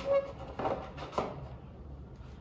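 Over-ear headphones being pulled out of the moulded tray in their box: a few short scrapes and knocks of handling, roughly half a second apart.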